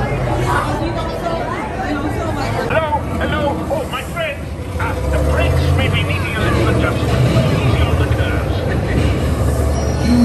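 Voices chattering in a crowded ride queue, then, about halfway through, the steady low rumble of a theme-park dark-ride vehicle moving, with voices still over it.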